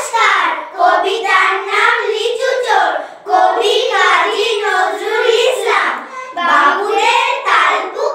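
A group of young girls reciting a Bengali poem in unison, in a sing-song chorus with brief breaks between lines about three and six seconds in.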